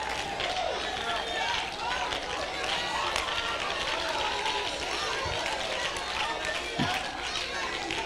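A church congregation's many overlapping voices, calling out and murmuring at once.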